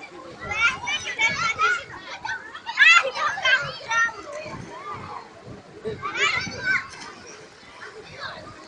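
Children's voices calling out and chattering at play, high-pitched and in short bursts, loudest about three seconds in.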